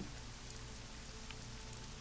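Faint, steady background hiss with a low hum underneath, in a short pause between speech.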